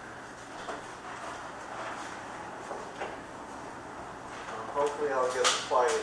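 Low background of people moving and handling things. About five seconds in, a person's voice is heard briefly, with a sharp click among it.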